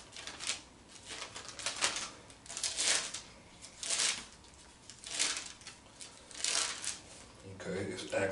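Pages of a Bible being leafed through by hand: a run of quick paper rustles, about one a second.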